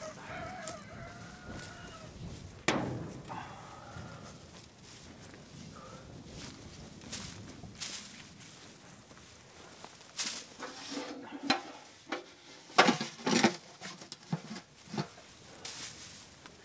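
A rooster crows once at the start, followed by a fainter chicken call a few seconds later. In the last few seconds comes a run of sharp rustles and knocks in dry grass, the loudest a couple of seconds before the end.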